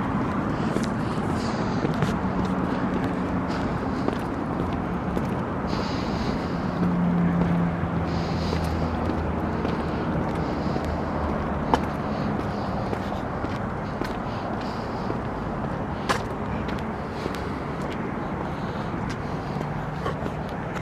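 Steady highway traffic noise: a continuous hiss of tyres with the drone of passing vehicles' engines, one growing louder about a third of the way in.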